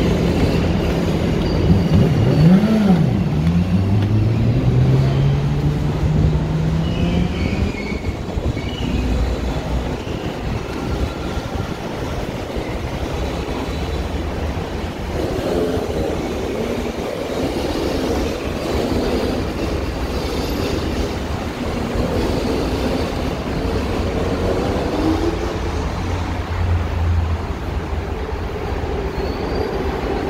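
Elevated subway train running on the steel structure: a steady rumble, with a motor whine that climbs steadily in pitch over several seconds near the start as the train picks up speed.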